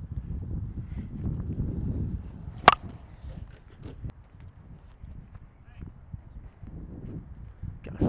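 A single sharp crack of a 2023 Easton POP slowpitch softball bat striking a ball, about three seconds in, over a low rumble.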